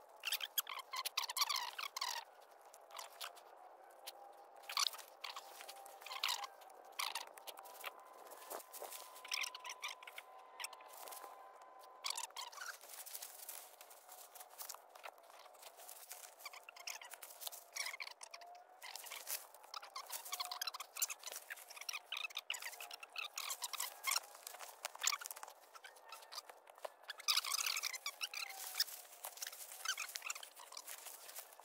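Dry leaf litter crackling and rustling in irregular bursts of clicks as a deer carcass is cut open with a knife and handled and shifted on the forest floor during field dressing.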